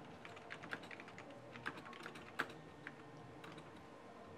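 Typing on a computer keyboard: irregular runs of key clicks, with one keystroke louder than the rest about two and a half seconds in.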